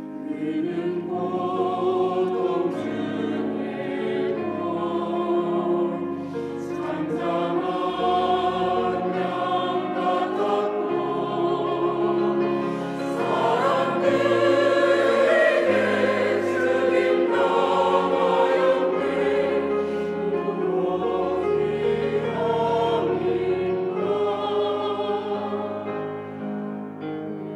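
Mixed-voice church choir singing in Korean, swelling to its loudest around the middle.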